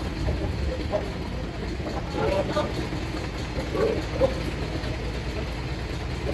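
Outdoor background noise: a steady low rumble with faint, distant voices now and then.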